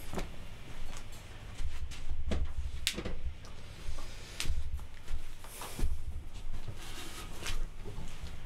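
Handling noise: a string of knocks, clicks and low thumps as a guitar is set down and its cable unplugged among the studio gear.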